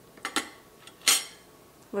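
Metal spoon clinking against ceramic dishes: two light taps, then one louder clink with a short ring about a second in.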